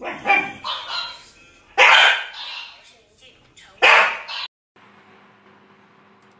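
A dog barking: three loud, sharp barks about two seconds apart, each with a little ringing after it.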